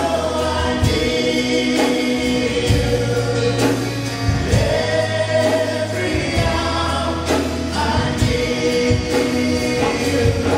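A live church worship band (acoustic and electric guitars, keyboard, drums) playing a slow worship song while several singers sing together in long held notes over sustained bass.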